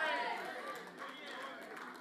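A faint voice trailing off and fading in a reverberant hall, leaving low room noise.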